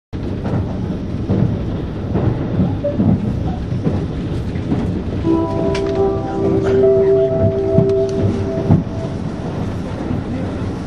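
Steady rumble of a limited express train running, heard inside the passenger car. From about five seconds in, a short chime of a few held notes plays over the train's PA for some three seconds, the signal that an on-board announcement is about to start.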